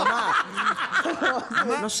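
People chuckling and snickering in short bursts, mixed with talk.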